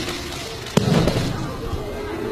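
A thrown martial-arts partner landing on a gym mat: one sharp slap-thud about three-quarters of a second in, with a short dull rumble after it.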